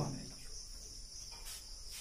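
Insects, crickets by the sound of it, keeping up a faint, steady high-pitched background trill in a short pause between words.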